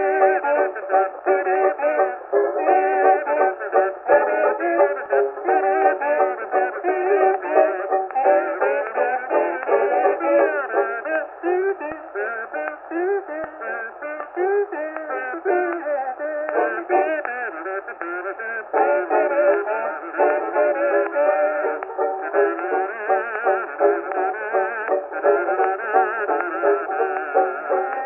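Kazoos buzzing the tune over banjo on a 1924 acoustic-era Edison Diamond Disc. The sound is thin, with no deep bass and no treble, and it is somewhat quieter in the middle.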